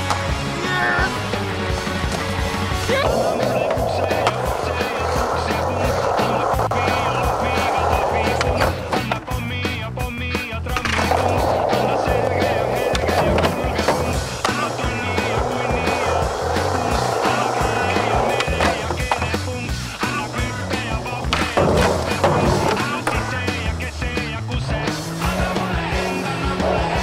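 Skateboarding over a music track: wheels rolling on pavement, with repeated sharp clacks of tail pops and board landings and a grind along a ledge.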